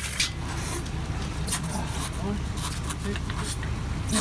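A steady low rumble with scattered short knocks and scrapes as a fibreglass boat is pushed and rocked on its trailer.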